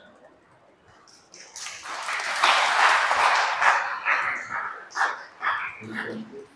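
A congregation applauding. The clapping starts about a second and a half in, is loudest around three seconds in, then thins to scattered claps.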